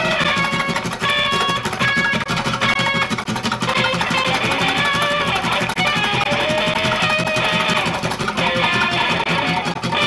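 Two guitars improvising a free-jazz duet: a dense, unbroken stream of plucked notes, some short and some held and ringing.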